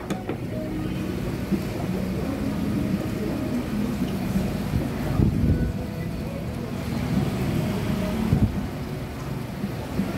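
Open-air restaurant ambience beside a busy street: a steady low rumble of passing traffic with faint background music, and a couple of dull knocks about five and eight seconds in.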